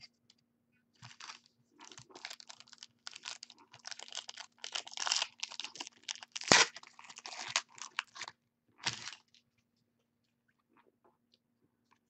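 Foil trading-card pack wrappers being torn open and crinkled in the hands: an irregular run of crackling rustles that stops about nine seconds in. A faint steady hum runs underneath.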